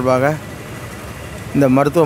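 A man speaking into a handheld microphone, with a pause of about a second in the middle. A steady low background noise fills the pause.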